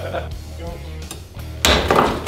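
A wooden mallet strikes a block of clear ice once near the end, a sudden sharp crack as the ice shatters, over background music with a steady bass.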